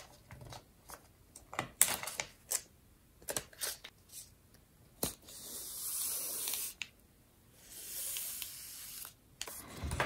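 Paper and vellum pages crinkling and clicking as they are handled and pierced with a sewing needle. Then twice, about five and eight seconds in, a long hissing rub as the thread is drawn through the holes in the paper.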